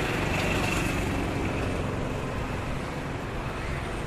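Steady city street traffic noise with no distinct single event, easing slightly toward the end.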